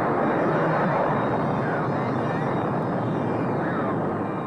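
Atlas rocket engines at liftoff, a loud, steady rush of noise.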